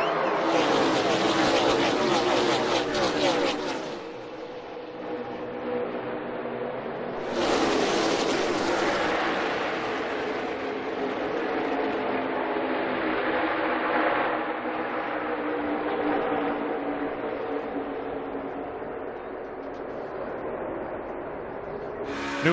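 A pack of NASCAR Cup Series stock cars racing at full throttle, their V8 engines blending into one dense sound whose pitches rise and fall as cars pass. The sound drops in level about four seconds in and jumps back up about seven seconds in.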